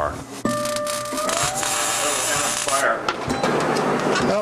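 Welding arc crackling and hissing for about two seconds, starting about half a second in, over background music with steady held tones, one of which slides upward.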